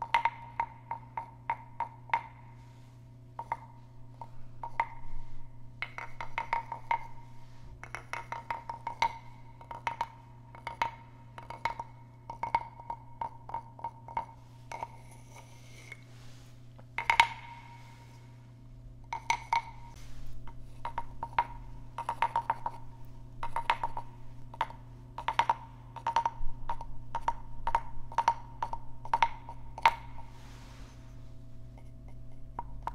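A carved wooden croaking-frog guiro, its stick scraped along the ridged back in stroke after stroke, each stroke a quick string of wooden ticks with a hollow ringing tone. The frog's mouth is stuffed with tissue to damp it, since it is otherwise too loud.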